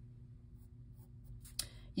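Mechanical pencil drawing on sketchbook paper, a faint scratching of graphite on paper, with one sharp tick about a second and a half in.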